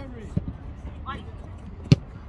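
Football struck with a boot close by: one sharp thud near the end, the loudest sound, with a smaller knock of the ball early on. A short shout from the pitch about a second in.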